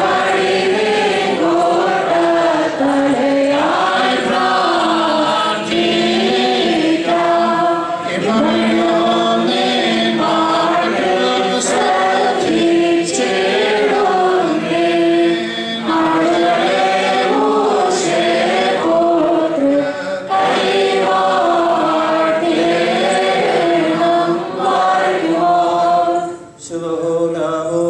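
A group of voices singing a slow liturgical chant of the Malankara Orthodox service in unison, with sustained, gently moving notes.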